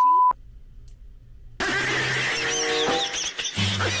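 A steady one-pitch censor bleep for about a third of a second, covering a spoken word. After a short quiet gap, music from a meme clip starts about a second and a half in, with held notes and quick high chirps over them.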